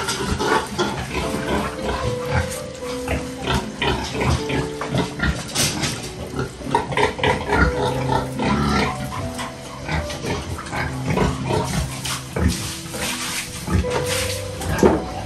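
Domestic pigs grunting in a concrete pen, with frequent short knocks and clatters throughout.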